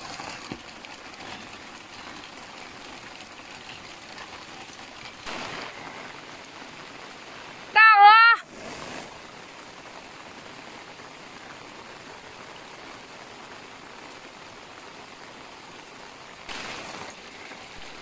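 Steady rain falling on foliage and wet ground, an even hiss. About eight seconds in, one loud, brief call with a wavering pitch cuts through it.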